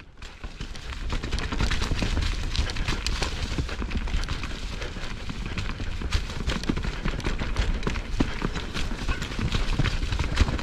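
Privateer 161 enduro mountain bike riding down a rocky, rooty trail: a dense, irregular clatter of tyres and bike rattling over rocks and roots above a low rumble, fading in over the first second.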